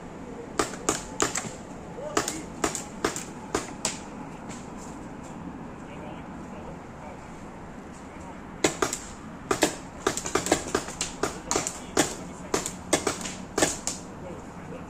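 Paintball markers firing: a string of sharp pops in the first few seconds, then a denser, faster volley of shots from about nine seconds in.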